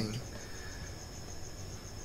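Quiet room tone: a faint, steady, high-pitched pulsing trill over a low hum.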